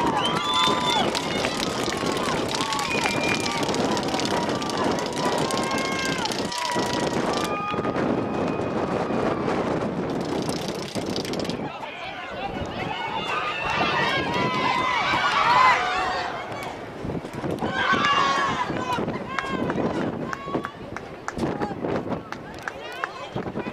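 Raised voices shouting and calling out across an outdoor soccer field during play, in short scattered calls with no clear words, over a steady bed of open-air noise.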